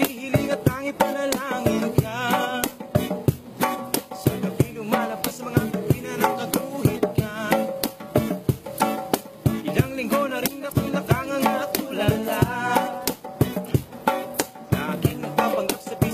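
Live acoustic music: an acoustic guitar strummed over a quick, steady beat on a pair of hand drums, with a voice singing a wavering, ornamented melody above them.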